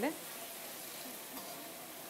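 Food sizzling in a pan on a gas stove, a steady hiss.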